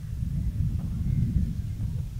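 Low, irregular rumble of wind buffeting a handheld interview microphone, with no other clear sound above it.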